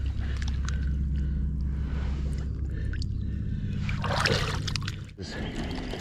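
Water splashing at the shore's edge as a catfish is lowered into the shallows and let go, with a louder splash about four seconds in. A steady low hum runs underneath.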